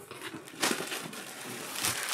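Plastic packaging crinkling and rustling as folded shirts in clear plastic bags are handled, with louder crackles about half a second in and near the end.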